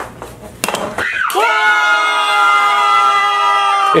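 A person's voice holding one long high note for about three seconds. It starts about a second in with a short downward slide and then holds steady, after a few light taps.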